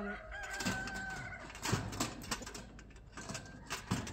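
A rooster crowing in a held, steady note during the first second or so, followed by several short, sharp sounds from the chickens in the pens.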